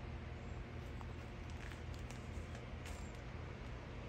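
Steady low background hum, with a few faint light clicks about halfway through.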